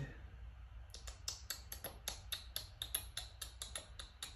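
Rapid run of light clicks, about five a second, starting about a second in, from the thin pages of a Bible being flicked through while searching for a chapter.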